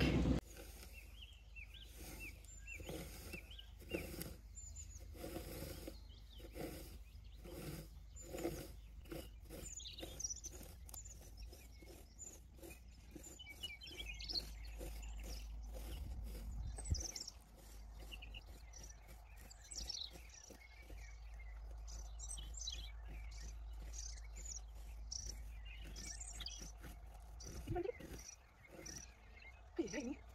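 Small birds chirping and singing over a low rumble of wind on the microphone. Soft scratching strokes repeat at a steady pace: a garden rake being drawn through freshly cut grass.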